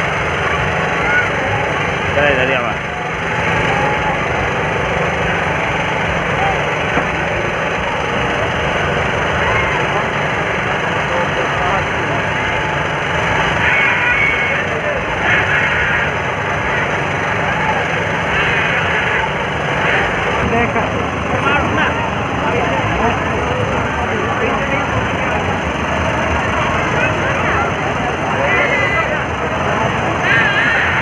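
Crowd hubbub at a busy fair: many voices talking at once, with no single voice standing out, over a steady low engine-like hum.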